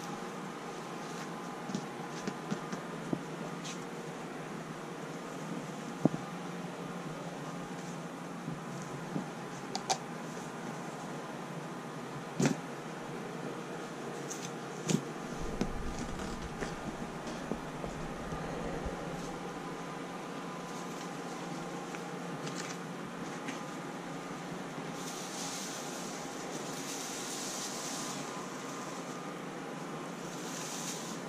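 Hands working over a guinea pig cage: fleece liners and loose hay being brushed, pulled and shifted, with a dozen or so short clicks and knocks from handling the cage parts, the loudest about six seconds and twelve seconds in. A steady hum runs underneath, and a brighter rustling hiss comes near the end as a hay rack full of hay is set down on the fleece.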